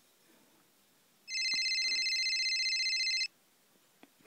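A phone ringing with an electronic trilling ring, about two seconds long, starting just over a second in.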